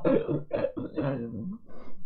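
A man's short wordless vocal sounds, broken into several pieces over about a second and a half, then fading.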